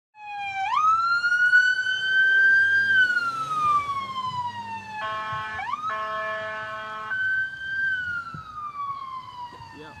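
Emergency vehicle siren wailing in slow rising and falling sweeps. About five seconds in, a steady blaring horn-like tone cuts across it for roughly two seconds.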